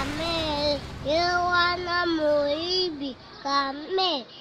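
A high voice singing long held notes with a wavering pitch, in short phrases broken by brief pauses about one second and three seconds in.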